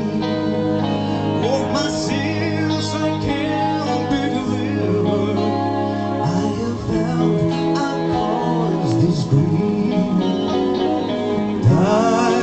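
Live rock band playing through a PA: electric guitar, bass and drums under a male lead vocal. Near the end, a sharp rising pitch sweep cuts through.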